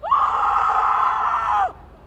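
A boy screaming loudly: one long, high scream held for about a second and a half, rising at the start and dropping away at the end.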